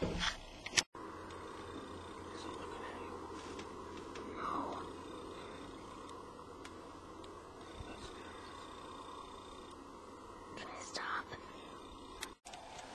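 Steady low background hiss with a few brief, faint whispers or breaths close to the microphone.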